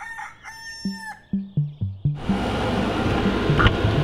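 A rooster crows once, a high call lasting about a second, as a morning wake-up cue. A few short low notes follow, and music with a steady low beat comes in about halfway through.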